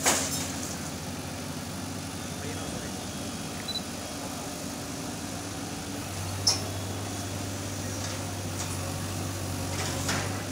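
Diesel engines of JCB backhoe loaders running steadily at idle, a low hum that deepens a little about six seconds in, with one brief sharp click or knock soon after.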